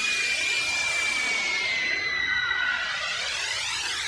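Electronic intro sting: a swirling, hissing texture with one high tone that glides slowly downward.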